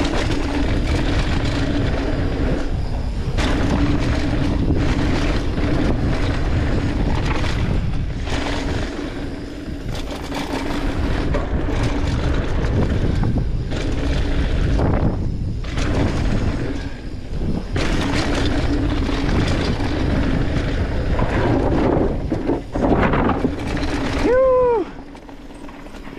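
Mountain bike riding fast down a dirt flow trail: wind buffeting the camera microphone, with tyre roar and bike rattle on the dirt and a steady low hum. Near the end a rider gives a short whoop and the noise drops as the bike slows.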